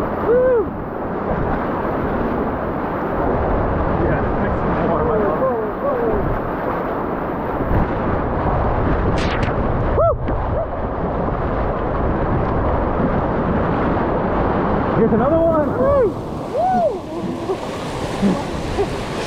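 Rushing whitewater rapids as an inflatable raft runs through standing waves, a loud, steady roar of churning water and spray. About ten seconds in, a wave breaks over the bow with a brief splash.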